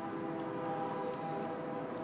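Electric trike's Crystalite X5303 hub motor and its controller giving a steady whine of several held tones while rolling slowly.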